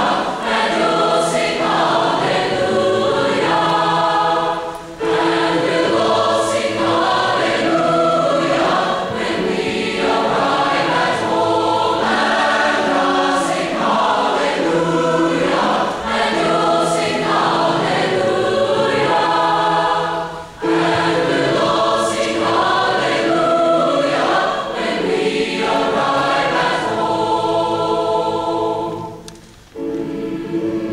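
A large choir singing sustained chords in harmony, in phrases with short breaths about five seconds and twenty seconds in, the last phrase dying away near the end.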